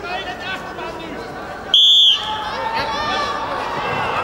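Referee's whistle: one short, shrill blast about two seconds in, stopping the ground wrestling. Voices and crowd chatter in the arena continue around it.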